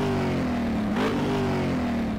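Car engine revving, its pitch swooping up and down about once a second.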